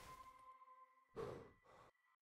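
Near silence as the drum music fades out, with one short, soft exhale of breath a little over a second in.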